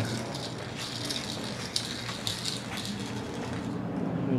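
Footsteps on a concrete driveway and handheld-camera handling noise: faint scuffs and a few scattered light clicks over a steady low hum.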